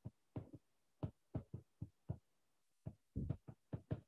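Faint, irregular soft taps and strokes of a stylus on a tablet screen during handwriting, about a dozen in all, with a small cluster just after three seconds.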